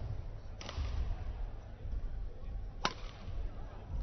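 Badminton rackets striking the shuttlecock during a rally: two sharp cracks about two seconds apart, over a low, steady arena rumble.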